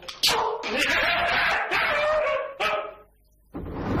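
A man's loud, drawn-out cry of pain as he is bitten. It cuts off about three seconds in.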